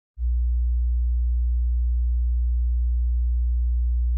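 A single steady, very low electronic hum-like tone, pure and unwavering in pitch and level, starting just after the beginning.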